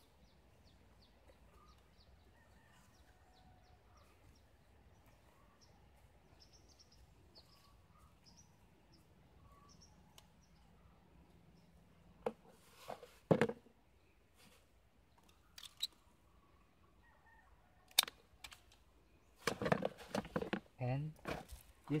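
Small birds chirping faintly over quiet outdoor air. Past the middle come a few sharp clicks and rustles of hands working at the graft.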